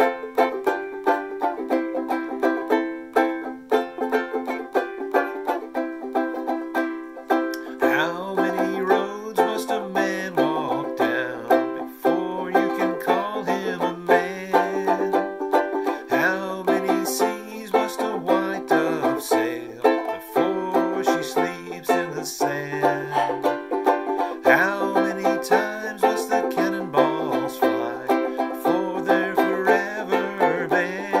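Firefly banjolele (banjo ukulele) strummed in a steady chord rhythm. After about eight seconds a low male voice begins singing over it.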